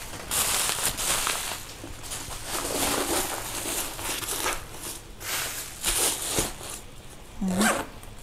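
Rustling and scraping as a cowhide leather handbag is opened and handled and its stuffing is pushed inside to hold its shape, coming in a string of short irregular bursts.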